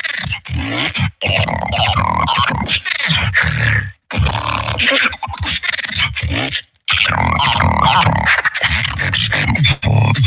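Human beatboxer performing a solo battle round into a handheld microphone: a fast run of vocal drum sounds, bass tones and voiced textures, broken by brief silent stops about 1, 4 and 7 seconds in.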